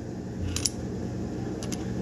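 Light metallic clicks of a SCCY CPX-2 9mm pistol's slide and frame parts being handled during reassembly: a pair of small clicks about half a second in and another pair after about a second and a half.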